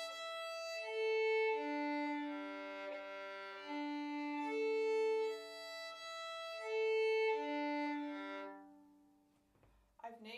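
Violin bowed in slow slurred crossings between its open strings. Sustained notes alternate smoothly about once a second, the neighbouring strings overlapping as the bow rolls across, and the sound fades out near the end.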